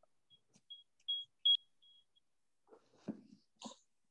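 A run of short, high-pitched chirps, all at one pitch, two or three a second, fading out about two seconds in. Soft handling noise follows near the end.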